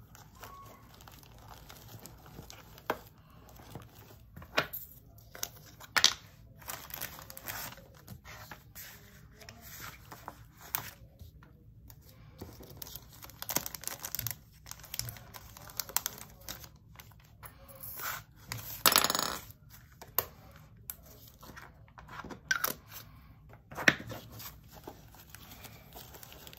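Small plastic diamond-painting drill bottles and resealable plastic baggies being handled: scattered sharp clicks and taps with crinkling plastic, and a longer rustle about two-thirds of the way through.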